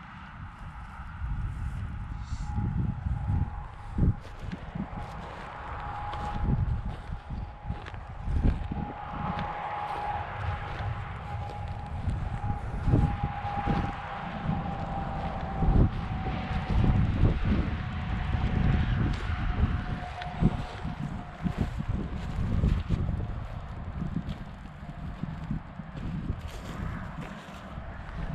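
Wind buffeting the camera's microphone in uneven gusts, with footsteps on dry mowed grass. A faint steady hum slowly sinks in pitch through the middle.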